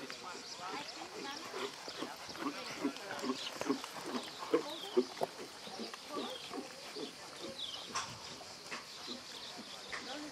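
Horse cantering on a sand arena: soft, rhythmic hoofbeats and breathing in time with the strides.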